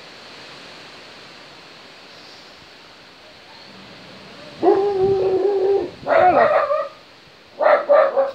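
A dog whining and yelping: three drawn-out pitched calls in the second half, the first held steady for about a second, the second dropping in pitch as it ends. A steady hiss of wind on the microphone lies underneath.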